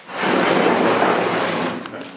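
Loud rubbing and rustling right against the microphone, lasting about a second and a half: fabric brushing past the recording phone.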